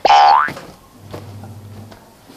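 A short, loud sound that sweeps sharply upward in pitch, lasting about half a second, like a comic 'boing' sound effect. After it only a faint low hum remains.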